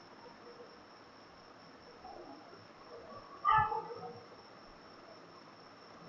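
Quiet room tone with a faint, steady high-pitched whine throughout, and a brief murmur from the man's voice about three and a half seconds in.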